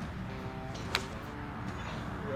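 A golf iron striking a ball off the turf: one sharp click about a second in. Background music plays throughout.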